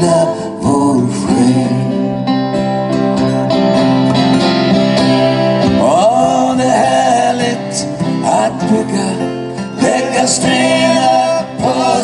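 Live acoustic music: two acoustic guitars playing a slow song, with singing.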